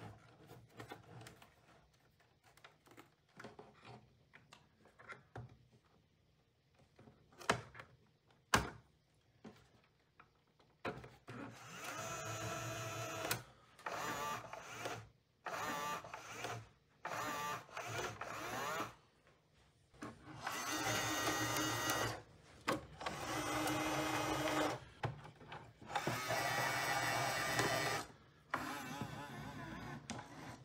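Bambu Lab AMS filament feeder motors whirring as they pull filament into the system, in a series of runs of a second or two each with short pauses between. Before that come quiet spool-handling sounds and a couple of sharp clicks as spools are set in the holders.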